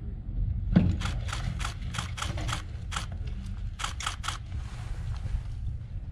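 Quick footsteps of boots crunching on sandy gravel, about a dozen steps over some three seconds, then stopping, over a steady low rumble.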